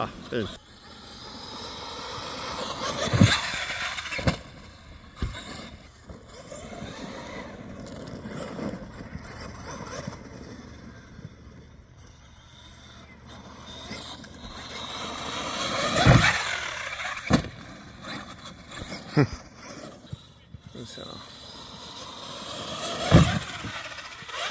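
Electric RC monster trucks driving hard on a dirt and grass field, their motors whining up and down as the throttle changes, with several sharp thumps as trucks land jumps or hit the ground.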